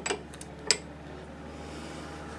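A single sharp click just under a second in, after a fainter tick, as the strimmer line is handled in the jaws of a bench vise; the rest is a steady low hum.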